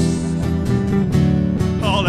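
Live rock band music: guitar and bass playing on through a gap between sung lines, with the singing voice coming back in near the end.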